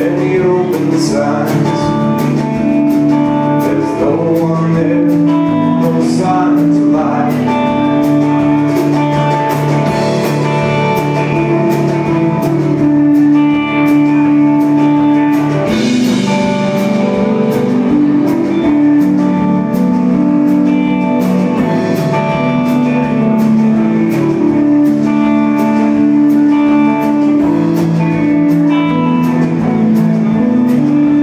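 Live folk-rock band playing: electric guitars over a drum kit keeping a steady beat, with held chords changing every second or two.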